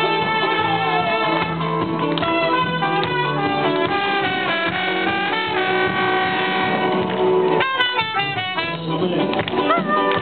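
Mariachi band playing, led by a trumpet with long held notes over the band's accompaniment. A quick run of short rising notes comes about three quarters of the way through.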